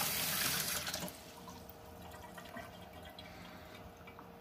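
Water running from a tap, shut off about a second in, then a quiet room with a faint steady hum.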